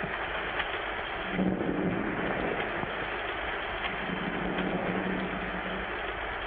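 Steady hiss of an old film soundtrack, with a faint low held note sounding twice.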